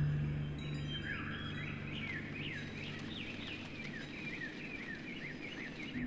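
A songbird singing a quick run of high chirping notes that rise and fall, beginning about a second in, over a faint steady background hiss. A low struck note dies away over the first few seconds.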